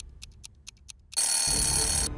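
Quiz countdown-timer sound effect: a faint, fast clock ticking, about four ticks a second, then, a little past halfway, a loud alarm bell ringing as the time runs out.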